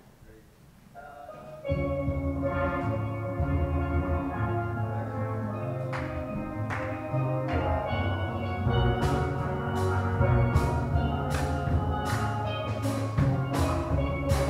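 Steel pan band playing, the pans starting together abruptly about two seconds in after a near-quiet moment. From about nine seconds in, a run of sharp strikes joins the ringing pan notes.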